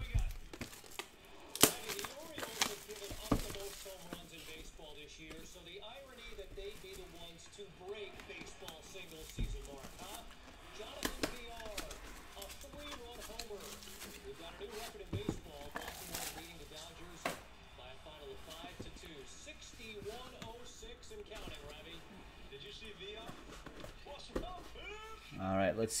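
Plastic shrink-wrap crinkling as it is peeled off a small cardboard coin box, with sharp clicks and taps from the box being handled, over a faint voice in the background.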